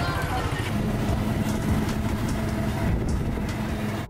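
Street traffic noise with a tuk-tuk's motorbike engine running, a steady low hum coming in about a second in, with voices in the background.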